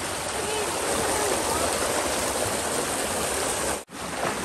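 Mountain stream rushing over boulders and small cascades, a steady even rush of water that drops out for an instant near the end.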